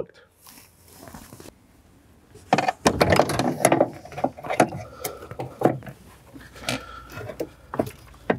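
Handling noise as two compact car amplifiers on a metal mounting bracket are worked up behind the dash panel: clicks, knocks and rattles against plastic trim. It starts quiet, has a dense burst of knocking about two and a half seconds in, then scattered clicks.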